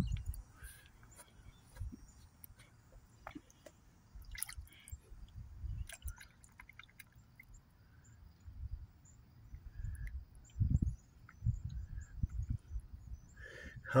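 Small splashes and drips at the water surface as small fish snatch at a piece of meat held on a fork, with scattered light clicks over a low, uneven rumble.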